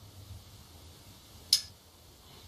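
A single sharp click about one and a half seconds in from a Carter Chocolate Addiction handheld thumb release being tripped, its trigger letting the jaws snap open, over a faint low hum.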